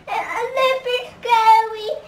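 A young boy singing two long high notes in a row, the second held steady.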